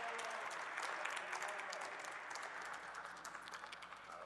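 Applause from the members of a large chamber, a dense patter of many hands clapping that thins out near the end.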